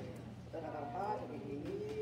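A woman's voice praying aloud in a drawn-out, sing-song way, her pitch gliding slowly up and down, over a steady low hum.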